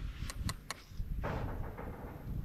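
Three quick light clicks in the first second, then a soft rustle, over a low rumble.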